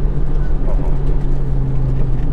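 Nissan Skyline GT-R (BCNR33) RB26 twin-turbo straight-six running under light load, heard from inside the cabin, its exhaust quietened by an inner silencer. The engine note settles slightly lower about a second in, with road and tyre noise underneath.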